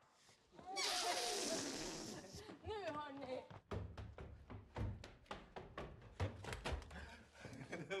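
A brief burst of excited voices from a group of people, then quick footsteps thudding up wooden stairs, several footfalls a second.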